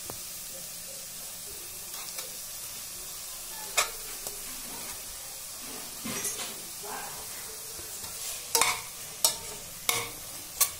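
Onion-tomato masala sizzling steadily in a stainless steel pressure cooker pot, with a few sharp scrapes and knocks of a steel spatula against the pot, coming more often in the second half as the masala is stirred.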